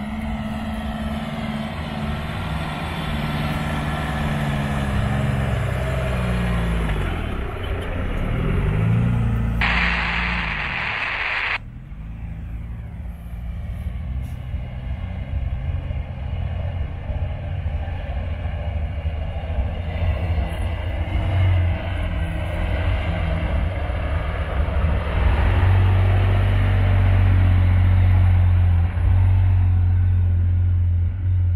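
Off-road 4x4 engines, ending with a Toyota Land Cruiser 80-series, running as the trucks creep down a steep dirt slope; the engine note drifts up and down. About ten seconds in, a loud hiss lasts two seconds and then cuts off sharply. Near the end the engine hum grows louder and steadier as the Land Cruiser comes close.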